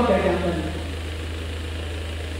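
A man's amplified voice finishes a phrase and echoes away through a large hall in the first half second. A steady low electrical hum from the public-address system carries on underneath, then stands alone for the rest of the moment.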